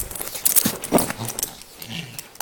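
Pug puppy making several short, low grunting noises close up as it plays, mixed with a few light taps.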